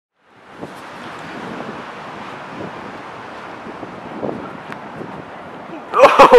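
Steady wind noise on the microphone over the wash of surf, fading in just after the start.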